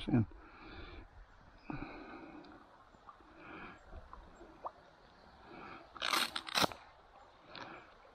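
Faint handling and rustling noises close to the microphone, with a few small clicks and two louder, brief scuffs about six seconds in.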